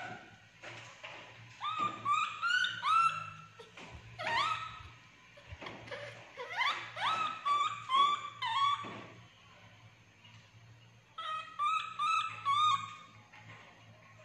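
Baby monkey giving repeated short whimpering calls, each rising in pitch and then levelling off, in runs of three to six with pauses between. A faint steady low hum lies underneath.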